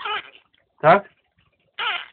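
Talking parrot's short, high-pitched speech-like calls, one at the start and one near the end, with a person's rising "tak?" between them.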